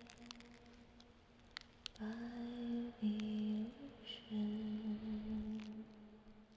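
A voice humming low, held notes: faint at first, then three long notes starting about two seconds in, each about a second long, with small steps in pitch between them.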